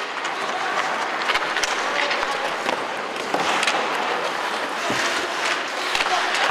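Ice hockey practice on an indoor rink: skate blades scraping the ice in a steady hiss, with irregular sharp clacks of sticks and pucks.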